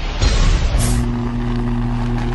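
Sound design for an animated logo intro: a loud low rumbling whoosh, then a steady low electric-sounding hum that starts about a second in, with a sharp hiss at the same moment.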